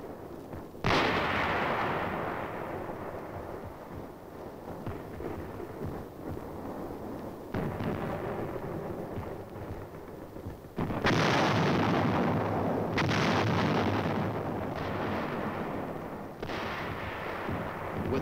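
Artillery barrage: five heavy blasts, each rolling off into a long rumble, with the loudest about two thirds of the way through.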